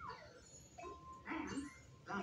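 Cartoon sound effects from a television speaker: a quick falling tone at the start, a short beep about a second in, then a brief squeaky, voice-like sound.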